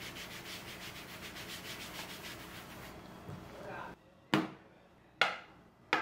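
Marker writing wiped off a wooden tabletop by hand, a brisk rubbing of about five strokes a second that stops suddenly about four seconds in. Then three sharp knocks, the loudest sounds, as small acrylic paint jars are set down one at a time on the wooden table.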